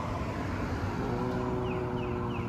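Low, steady rumble of road traffic, with the steady hum of a vehicle engine coming in about halfway through.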